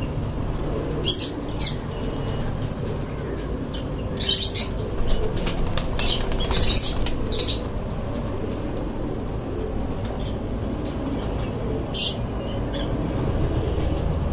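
Saharanpuri Topidar pigeons flapping their wings in short bursts, several times, busiest between about four and seven and a half seconds in and once more near the end, over a steady low background rumble.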